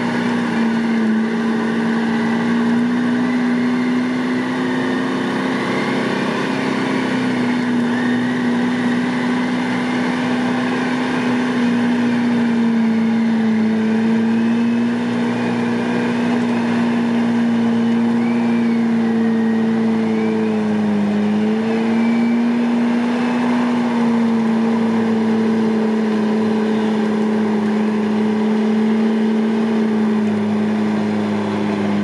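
An off-road 4x4 winching itself up a steep mud slope: one steady mechanical drone holding a nearly constant pitch, dipping slightly now and then.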